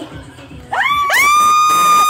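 A person's loud, high-pitched shriek of excitement: a sharp rising yelp about three-quarters of a second in, then a scream held on one steady high note.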